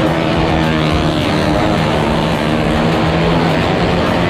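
Motorcycle engine running hard as the rider circles the vertical wooden wall of a well-of-death drum, a loud steady drone whose pitch swells and falls as the bike sweeps around.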